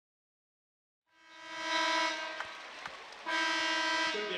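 Basketball arena horn sounding two steady blasts to signal a substitution; the second blast starts suddenly about three seconds in. Crowd noise lies underneath, and the sound cuts in from dead silence about a second in.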